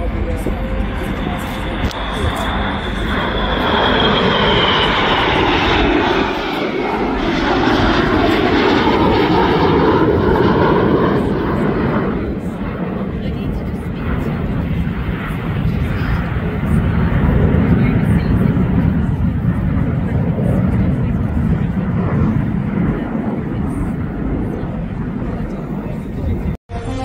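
Jet engines of a formation of four display jets flying past: a high whine falling in pitch a few seconds in as they go by, under a continuous roar that swells and fades twice.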